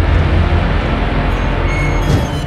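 Loud jet engine noise: a deep, steady rumble with a hiss above it.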